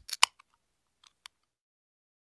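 Three short sharp clicks right at the start and a faint click just past a second in, then dead silence.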